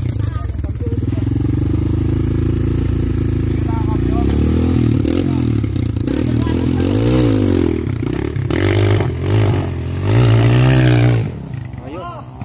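Rusi trail motorcycle engine revving in repeated rises and falls under load on a steep dirt climb; the loud running drops away near the end.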